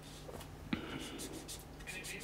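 Faint rustling of paper with a few small clicks, one sharper click about three-quarters of a second in.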